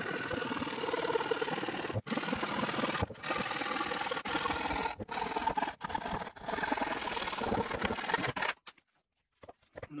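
Hand saw cutting through 10 mm plywood, a continuous rasping of the teeth in the kerf with a few brief breaks, stopping about a second and a half before the end.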